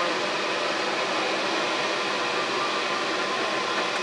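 Steady rushing of a vent hood's exhaust fan pulling air through the enclosure, with a faint even hum under it.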